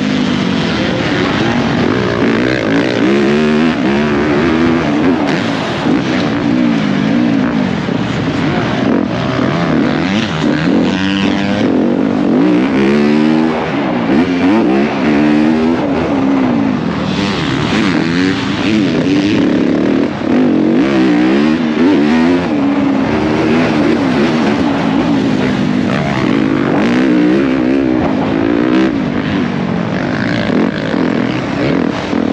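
Dirt bike engine heard on board while riding a motocross track: the pitch climbs and drops again and again as the rider opens and closes the throttle and shifts through the gears.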